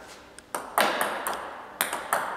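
Table tennis pendulum serve: a plastic ball struck by the racket and bouncing, a quick series of about six sharp, ringing clicks.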